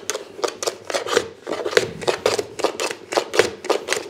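Hand plane taking quick short strokes, about four a second, across the mitred ends of two spalted beech box sides held in a 45-degree mitre shooting jig, trimming them to the same length.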